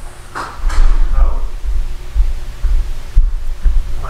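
Someone coming in through a house's front door: a run of low, irregular thuds and bumps with a few sharper knocks.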